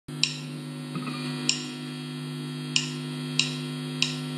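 Steady mains hum from an amplified electric guitar's signal chain, a Stratocaster-style guitar not yet being played, with four sharp clicks spread through it.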